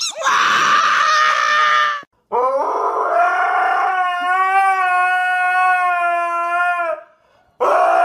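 A husky howling: one long howl that rises at its start and then holds a steady pitch for about four and a half seconds. A second howl begins near the end. Before the first howl comes a loud two-second cry.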